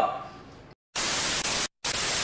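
Television static hiss used as a glitch transition effect: a burst of even hiss starts about a second in, cuts out for an instant near the end, and comes back.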